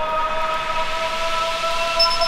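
Acid/hard trance electronic music: a sustained synth chord of three steady tones slowly gliding upward in pitch, over a rising noise sweep, with no drum hits.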